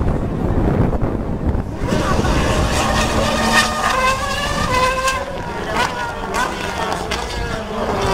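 Racing car engines revving and changing pitch as the cars run through a corner, with people talking over them.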